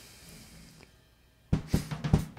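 Near silence, then about one and a half seconds in a drum-kit sample starts playing back, with sharp kick and snare hits, heard without the DeHiss plugin engaged.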